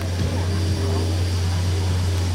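A steady low drone from an engine or motor, holding at an even level.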